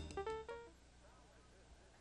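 Electronic organ finishing a piece: a few quick single notes end on a short held note about two-thirds of a second in. Near silence follows.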